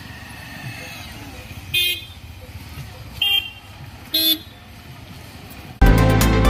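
Three short vehicle horn honks, a second or so apart, over low steady road and crowd noise. Loud electronic music comes in just before the end.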